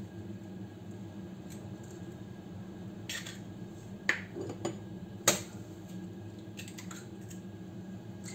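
Raw eggs being cracked open and dropped into a stainless steel kitchen-robot jug: several sharp cracks about a second apart, the loudest a little past the middle.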